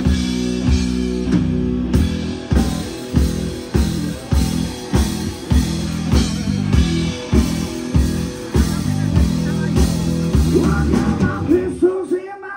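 Live rock band playing an instrumental passage: distorted electric guitar through Marshall amps, electric bass, and a Sonor drum kit hit hard on a steady beat.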